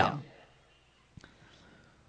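A man's word trailing off at the start, then a pause of near silence with one faint click a little past the middle.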